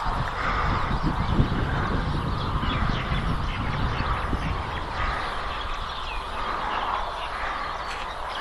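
Wind blowing across the microphone: a steady, gusty low rumble with a faint hiss above it.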